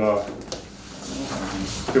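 Sheets of paper being handled and turned, with one sharp click about half a second in and a soft rustle building near the end.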